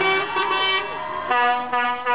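Truck horn honking: a short honk, then a long steady blast a little past halfway, broken once briefly. Shouting voices are heard near the start.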